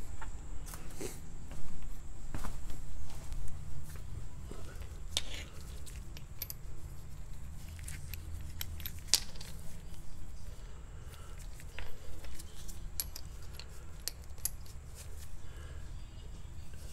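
Chrome ratchet sockets clinking and clicking as they are handled and sorted to find the right size, in scattered sharp strikes over a low steady rumble of handling noise.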